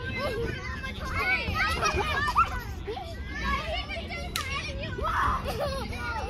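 Young children's high-pitched voices calling out and shrieking in play, in short bursts throughout, with one sharp click about four and a half seconds in.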